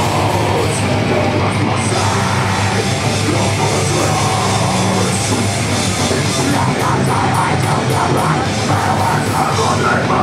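Live heavy metal band playing loudly and without a break: distorted electric guitars and a drum kit in one dense wall of sound, recorded from within the crowd.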